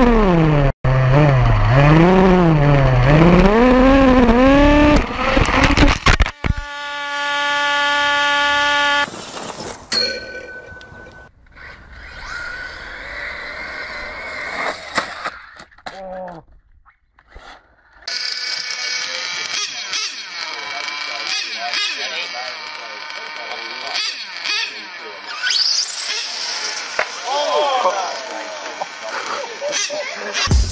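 Radio-controlled model cars running in a string of short clips, their motors rising and falling in pitch with the throttle, with abrupt changes at each cut and a brief near-quiet gap partway through.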